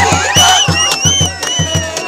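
Cajamarca carnival copla sung loudly by a group of voices over strummed guitars, with a steady low beat and hand clapping.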